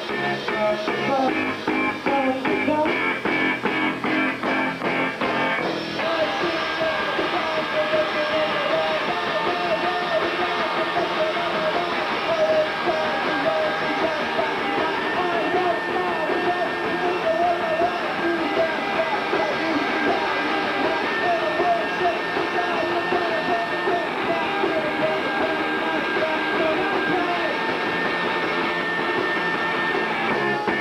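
Live rock band playing: electric guitars over a drum kit, the song's texture changing abruptly about six seconds in.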